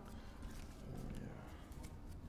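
Faint, scattered clicks of packets of playing cards being cut and snapped together by hand, over a low steady room hum.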